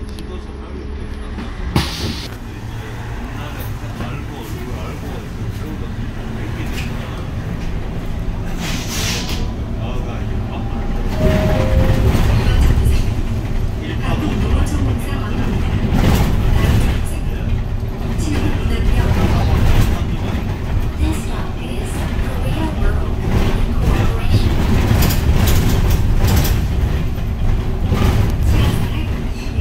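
Cabin noise inside a Woojin Apollo 1100 electric city bus pulling away from a stop and driving: a steady hum at first with a sharp click about two seconds in, then road and body rumble that grows louder from about ten seconds in as the bus gets up to speed.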